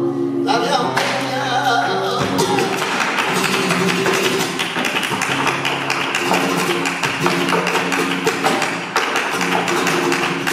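Live flamenco: a male cante voice sings over flamenco guitar. From about two seconds in, fast zapateado taps of the dancer's shoes on the wooden stage rattle over the guitar.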